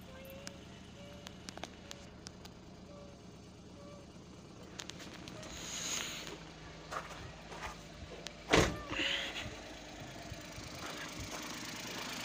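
Suzuki Wagon R's dashboard warning chime beeping about once a second, then a car door shutting with a loud thunk about eight and a half seconds in. The engine is running, started on the newly programmed key.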